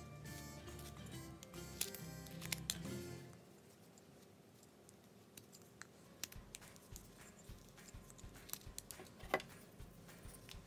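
Background music stops about three seconds in. A carving knife then cuts a wooden block by hand, giving a scatter of small sharp clicks and snaps, with one louder snap near the end.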